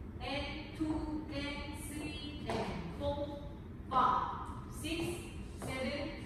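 Speech only: a voice talking in short phrases.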